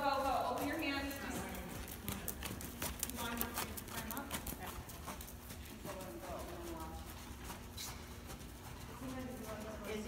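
Hoofbeats of a ridden horse moving around a sand arena, a run of irregular soft strikes, with people talking at times over them.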